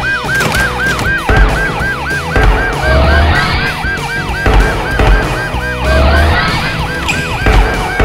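Fast electronic siren, a falling whoop repeated about four times a second, over background music, with a rising tone twice.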